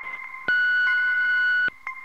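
A single steady electronic beep starts about half a second in, holds one pitch for a little over a second, then cuts off suddenly. A faint steady high tone runs under it.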